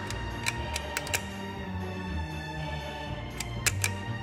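Background music with sustained notes, over sharp plastic clicks from a toy picture-gun viewer: several quick clicks in the first second and a few more near the end, the trigger mechanism advancing the pictures.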